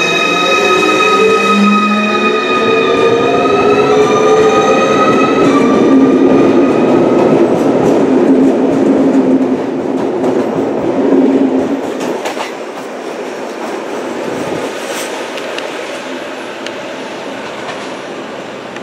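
ZSSK class 671 double-deck electric multiple unit pulling away: its traction electrics whine in a stack of tones that rise and jump up in pitch a few times as it accelerates. Then the rumble of its wheels on the rails swells as the cars pass, drops off sharply about twelve seconds in and fades as the train leaves.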